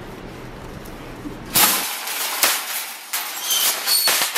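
Wire shopping carts rattling and clanking as one is pulled free of a nested row. A run of loud metal clatters starts about a second and a half in, with several sharp knocks and brief ringing notes near the end.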